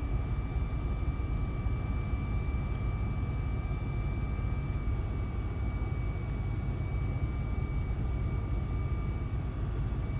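Electric motor of a Joey wheelchair lift running steadily as it raises a WHILL power wheelchair, heard from inside the van's cabin: a faint steady whine over a low hum.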